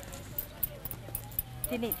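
Hair-cutting scissors snipping: a run of short, sharp clicks at an uneven pace, with a faint low hum behind.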